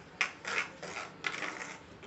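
A metal utensil beating eggs and rice flour in a plastic bowl: quick scraping clicks against the bowl, about three strokes a second, fading near the end.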